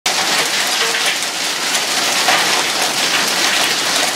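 Dime-sized hail coming down hard, a dense, steady clatter of many small impacts on solar panels and the yard.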